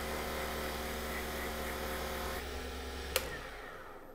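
Wood lathe motor running with cotton buffing wheels spinning, a steady hum, while a CA-finished pen blank is held against the wheel. A click comes about three seconds in, and the hum then fades out as the lathe winds down.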